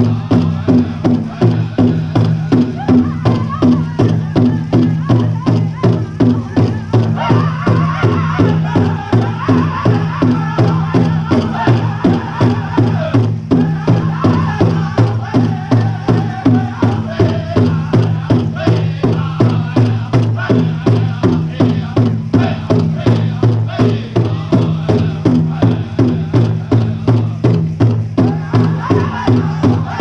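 Powwow drum group singing a jingle dress song: a big powwow drum struck in a fast, even beat with a chorus of high-pitched singing voices over it. The singing comes in louder stretches over the constant drumbeat.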